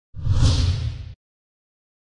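A whoosh sound effect with a deep low rumble under a hiss, lasting about a second and cutting off abruptly.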